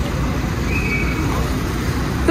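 Steady traffic rumble of cars at a roadside pickup curb, with a faint brief high tone just under a second in.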